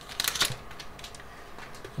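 Foil trading-card booster pack wrapper crackling as the cards are slid out, with a few sharp crinkles in the first half second, then quiet handling of the card stack.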